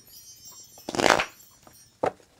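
A deck of tarot cards handled in the hands, with one short swish of the cards about a second in.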